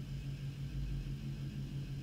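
Studio room tone: a steady low electrical hum with faint hiss from the microphone channel.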